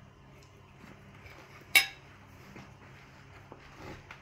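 A metal fork clinks once, sharply, against a ceramic plate a little under two seconds in, with a few faint ticks of handling around it.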